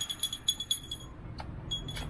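A rapid run of short, high-pitched electronic beeps, about seven a second, fading away over the first second, followed by a single click and one more brief beep near the end.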